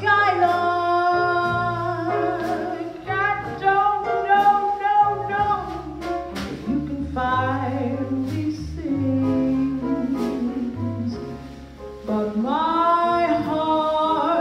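A woman singing a slow jazz ballad live into a handheld microphone, holding long notes with vibrato over a low instrumental accompaniment. The voice drops away briefly a little before the end, then comes back in with a strong, swelling phrase.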